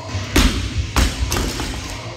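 Loaded barbell with rubber bumper plates dropped from hip height onto a rubber gym floor. One heavy thud about a third of a second in, then it bounces with a second thud about a second in and a smaller one just after.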